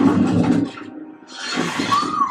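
A sudden loud impact from the show's soundtrack, with a low rumble that fades by about a second in, then a second noisy surge near the end.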